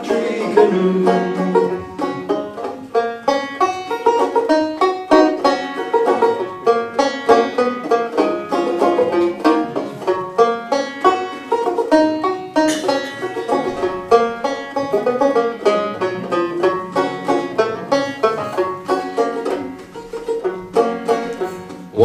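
Banjo played solo, a steady run of picked notes forming an instrumental break between sung verses of a folk song.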